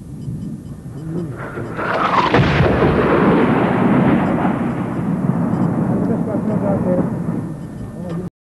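An artillery shell explodes about two seconds in, followed by a long rolling rumble that slowly fades away. Faint voices can be heard underneath.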